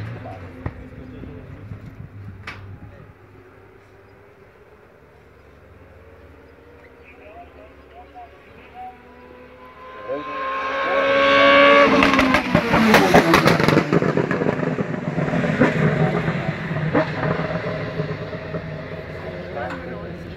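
Race car at full throttle up a hill-climb finish straight, its engine note rising as it nears. It is loudest as it passes close by about two-thirds of the way through, then runs on at a lower pitch as it goes away.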